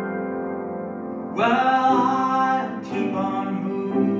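Grand piano played slowly in a solo instrumental passage. A held chord fades, then a louder chord is struck about a second and a half in, and another about three seconds in.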